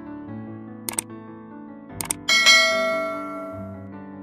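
Soft background piano music, with a subscribe-button animation sound effect over it: a pair of clicks about a second in, another pair about two seconds in, then a bright bell ding that rings out and fades over about a second and a half.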